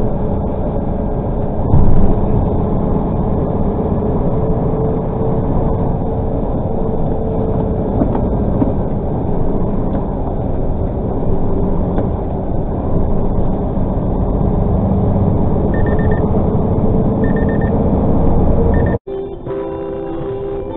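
Tractor-trailer truck driving on an expressway, heard from the cab: steady engine and road rumble with a faint steady hum. A brief loud burst comes about two seconds in, and three short high beeps sound about a second and a half apart near the end.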